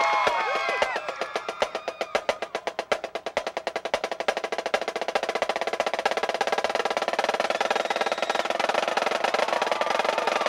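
Marching snare drum played solo with sticks: rapid strokes that start softer and swell into a loud, even, continuous roll from about four seconds in. In the first second, the tail of a pitched musical chord fades out under the drumming.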